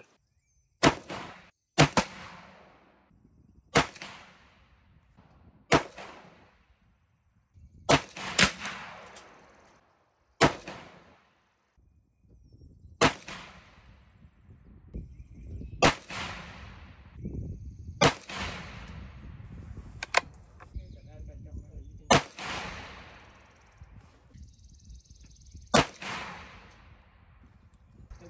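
A Savage Axis .223 bolt-action rifle firing a series of about a dozen shots, roughly two seconds apart, each a sharp crack with an echoing tail.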